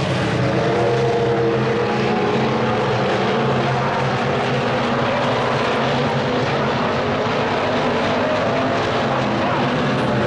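Dirt-track stock cars racing in a pack, their V8 engines running hard in a continuous drone. The engine pitch wavers a little as cars come past and move away.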